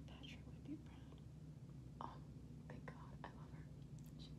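Faint whispering in a few short breathy bursts over a low, steady room hum.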